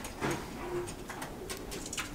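A pigeon cooing faintly in a few short, low, steady notes, with a few light clicks.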